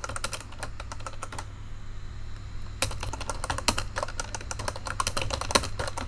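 Typing on a computer keyboard: quick runs of key clicks, pausing for about a second near the middle before resuming at a fast pace.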